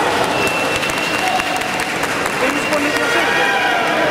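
Arena crowd: many voices calling out and clapping together in a dense, steady din. A thin high steady tone runs through most of it.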